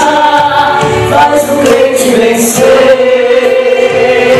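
A man and a woman singing a gospel song together through microphones, holding long notes.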